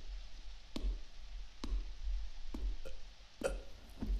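Slow, evenly paced footsteps on a hard floor, about one step a second, each a short sharp click over a soft low thud.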